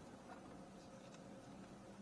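Near silence: faint room tone with a few faint light ticks about a second in.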